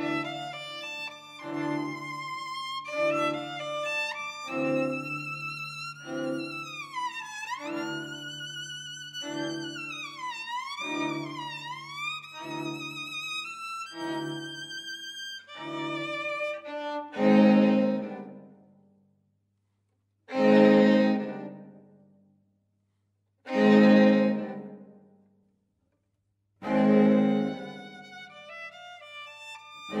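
String quartet playing a contemporary piece: short bowed notes repeating about once a second, with a high line sliding up and down in pitch in the middle. After that come four loud held chords, about three seconds apart, each dying away into silence.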